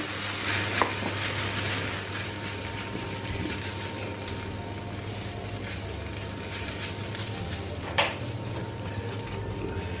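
Wooden spatula scraping and spreading mashed potato and salt cod in a ceramic baking dish, a soft continuous scraping, with a light knock about a second in and a sharper knock near the end.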